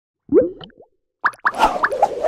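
Cartoon sound effects for an animated logo sting: a bubbly pop about a third of a second in, then a quick run of short rising blips and a whoosh near the end.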